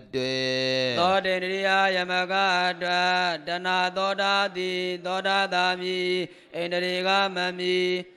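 A Buddhist monk chanting Pali scripture in a drawn-out, melodic recitation, holding long notes and stepping between pitches, with a short breath pause about six seconds in.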